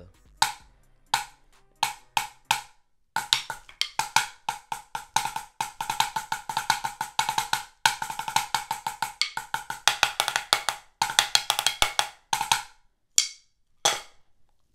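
Drumsticks on a practice pad playing the BYOS rudiment patterns for the letters H-A-P-L-E-S-S in one run: quick phrases of sharp strokes with short pauses between, ending on a single stroke near the end.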